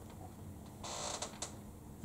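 Faint typing on a laptop keyboard: a few separate key clicks, with a short burst of rapid keystrokes about a second in.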